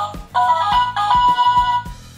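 Interactive Dinosaur Train dinosaur toy playing a short electronic jingle through its small speaker: a tinkly, ringtone-like tune of short notes over a light ticking beat, the tune stopping near the end.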